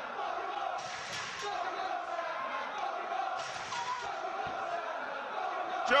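Wrestling crowd shouting and cheering in a steady din of many voices, with a single low thump about four and a half seconds in.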